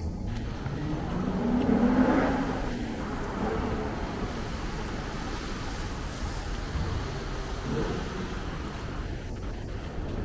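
A road vehicle passing by, its engine note rising then falling in pitch and loudest about two seconds in, with a fainter second pass near the end, over a steady city traffic hum.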